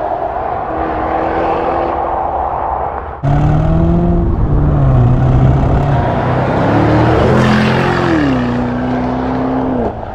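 2023 Range Rover P615 SV's twin-turbo V8 running through a QuickSilver sport exhaust with its valves open, driving toward the microphone. About three seconds in the sound jumps suddenly louder. The exhaust note then climbs in pitch and drops back, twice.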